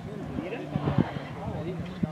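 Rally pickup truck's engine running hard on a gravel stage, a steady drone, with spectators' voices over it and a couple of sharp knocks about a second in.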